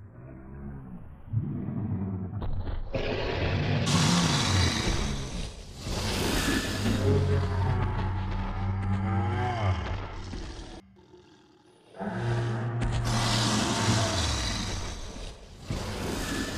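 Deep, drawn-out roars and growls of an animated T-Rex, a dinosaur sound effect, coming one after another with a break of about a second a little after the middle.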